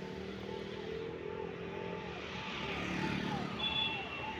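City street traffic: vehicle engines running and passing close by, with a short high beep near the end.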